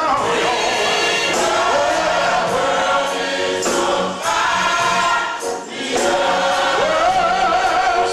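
Gospel church choir singing, with several voices held together in chords and two brief dips between phrases about four and five and a half seconds in.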